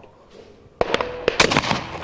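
Over-and-under shotgun fired at a going-away clay target a little under a second in. A string of sharp cracks and clicks follows.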